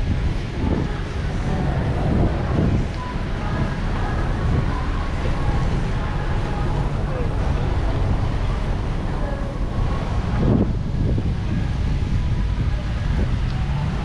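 Wind rumbling on the microphone of a handheld camera, with faint voices in the background.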